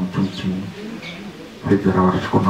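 A man speaking into a handheld microphone, his voice amplified through a loudspeaker, with a short pause near the middle.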